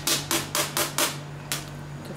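Quick rasping strokes of a vegetable being grated on a red plastic hand grater, about four strokes a second, breaking off after a second and followed by one more stroke.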